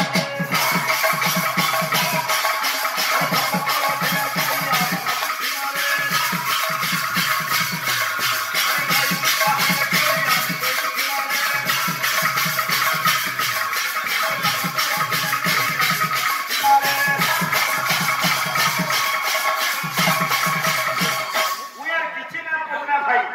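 Live kirtan music: a two-headed barrel drum plays rhythmic phrases in short groups over a steady, fast jingling beat, with held melody tones above.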